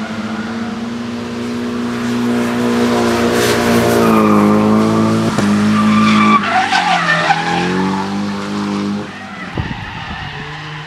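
Drift car's engine held high in the revs while its rear tyres screech in a long slide through a corner. About six and a half seconds in, the revs dip and then climb again. The sound drops away near the end.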